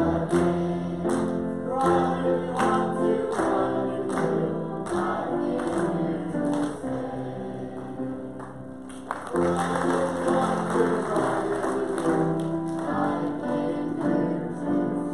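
Small group of men's and children's voices singing a gospel song together over a rhythmic instrumental accompaniment. The music drops quieter for a few seconds around the middle, then comes back in full.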